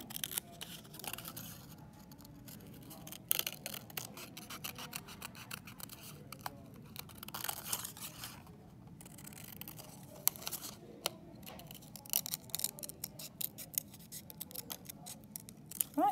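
Scissors cutting paper: a long run of irregular snips as the blades work around the edge of a cutout.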